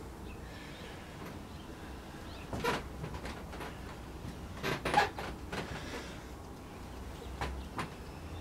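Quiet handling of a hand-built clay pot: a few short soft knocks and rubbing as fingers press and reshape the clay wall, spread a couple of seconds apart.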